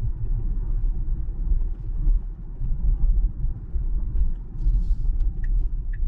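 Road and tyre noise heard inside a 2023 Tesla Model Y's cabin while driving, with the windows up and the fans and music off: a steady deep rumble with no engine note.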